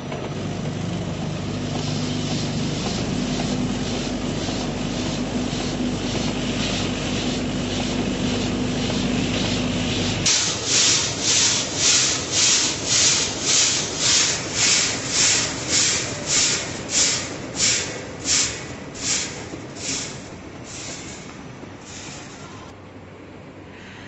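Rice grains pouring through the stainless-steel hoppers of a packing machine: a hiss over the machine's steady hum. About ten seconds in the hum stops and the rice comes through in rhythmic hissing surges, roughly two a second, that fade away near the end.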